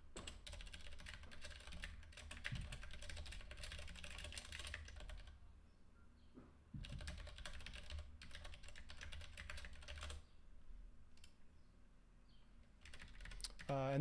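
Rapid typing on a computer keyboard in two runs with a short pause between, then a few scattered keystrokes.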